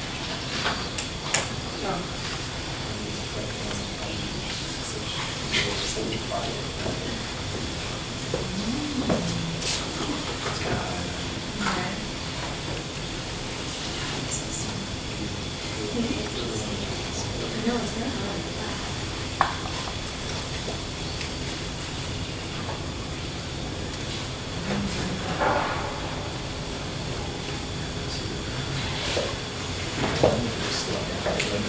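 Quiet, indistinct chatter of people in a room, with a few scattered clicks and knocks over a steady hiss.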